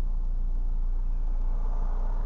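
Car engine and road rumble heard from inside the cabin as the car moves slowly: a steady low rumble.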